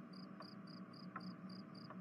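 Faint cricket chirping, a steady run of short high chirps at about three to four a second, as a night-time ambience bed.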